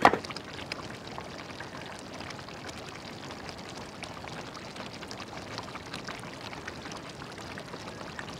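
Thick beef leg-bone curry simmering in a large pot, a steady bubbling hiss with small scattered pops. A short knock right at the start.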